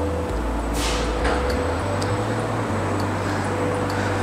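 Steady hum of running process machinery, the pump and vibrators of a graphene electrochemical cell, with a low rumble and a steady mid-pitched tone. A brief hiss comes about a second in.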